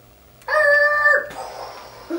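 A high-pitched voice holds one long level note about half a second in, a playful imitation of a toy car's 'beep', then trails off into a breath.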